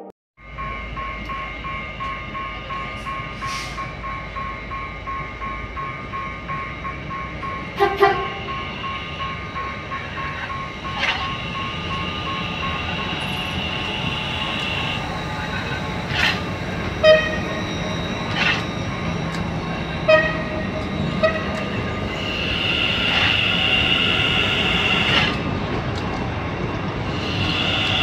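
Level-crossing warning bell ringing in a steady repeating pulse while a commuter train runs over the crossing. The train's wheels clack sharply over the rail joints in the second half, and the sound swells near the end.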